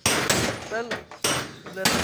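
Hammer blows on a chisel against the steel deck of a truck's flatbed, several sharp metallic strikes with ringing after them.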